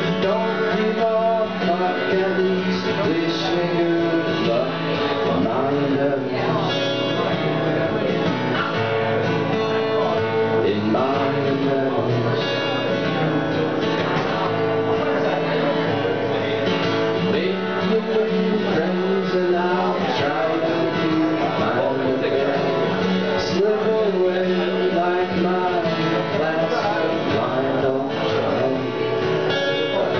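Acoustic guitar strummed and picked, with a man singing over it.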